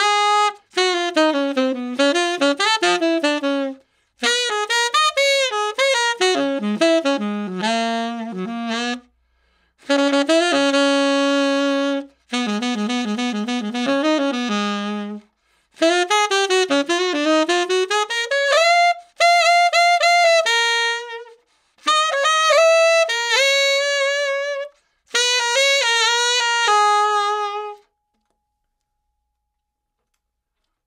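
Unaccompanied tenor saxophone played through a refaced metal Otto Link Super Tone Master 7* mouthpiece: a series of melodic phrases broken by short breaths. The playing stops about two seconds before the end.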